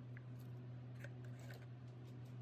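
Faint, short scrapes and light clicks of a silicone spatula working soap batter out of a plastic cup, a few separate strokes, over a steady low hum.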